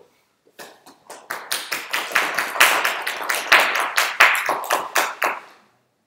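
Small audience applauding. Scattered claps begin, quickly build into steady clapping, then thin out and stop near the end.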